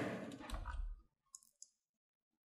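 A few faint computer-mouse clicks, spaced out over the first second and a half.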